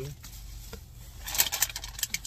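Plastic takeout food container being closed and put away: a fairly quiet first second, then a burst of crinkling and sharp clicks in the second half, over a steady low hum.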